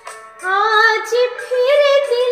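A woman singing a ghazal phrase in Raag Yaman over a karaoke backing track with a steady held drone. Her voice comes in about half a second in with a gliding, wavering line, and a second phrase rises near the end.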